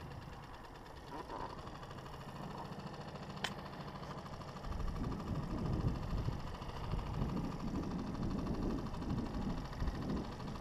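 A Mercury outboard motor idles steadily, with a single sharp click about three and a half seconds in. About halfway through, a louder, uneven low rumble takes over.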